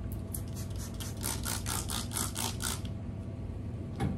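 Trigger spray bottle being pumped in a quick run of about eight sprays, each a short hiss, over a steady low hum.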